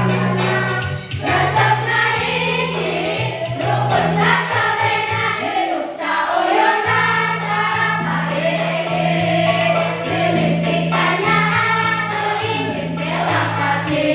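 A class of young teenage students singing a song together, a group of mixed voices in unison, over a musical accompaniment of held bass notes that change in steps.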